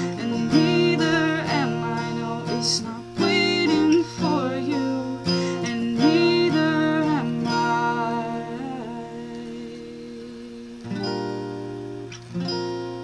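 Strummed acoustic guitar with a singing voice over it. The singing stops about seven and a half seconds in, and the guitar chords ring and fade until a fresh strum near the end.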